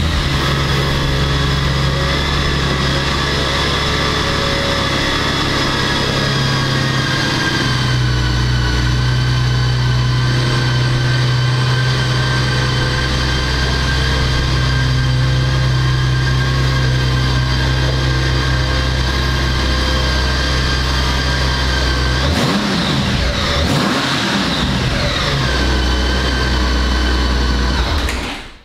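2006 Honda Gold Wing's 1832 cc flat-six engine idling steadily just after start-up. Near the end it is revved briefly a few times, the pitch rising and falling, then it settles back to idle.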